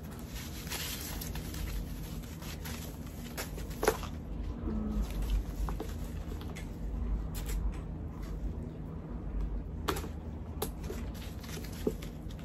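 Plastic packaging rustling and crinkling as a wrapped bag strap is unwrapped and packing is pulled out of a handbag, with a few sharp clicks.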